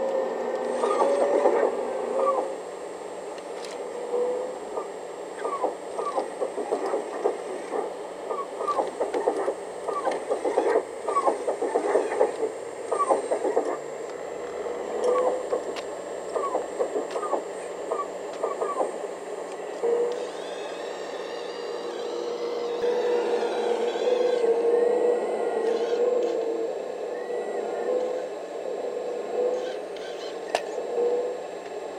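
A 1/14-scale radio-controlled Liebherr 970 hydraulic excavator working its hydraulic pump and metal tracks as it climbs onto a lowboy trailer. A steady hum runs under a long series of short clicks and clanks, which gives way after about twenty seconds to a steadier whirring with a wavering higher whine.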